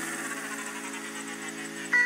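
Background electronic music: held synth tones fading slowly, then a sudden loud hit just before the end.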